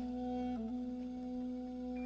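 A recorded song playing back in a loop: one long held note that dips briefly in pitch about half a second in.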